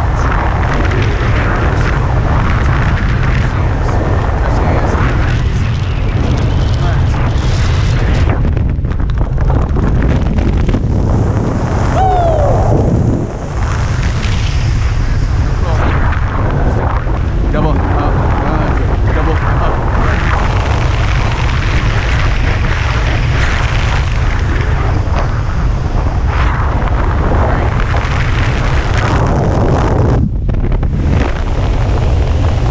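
Strong, steady wind buffeting the action camera's microphone as a skydiver descends under an open parachute.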